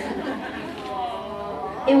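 Laughter followed by overlapping chatter of several voices from an audience.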